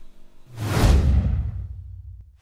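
Transition whoosh sound effect with a deep boom under it: it comes in about half a second in, sweeps downward in pitch and fades away near the end.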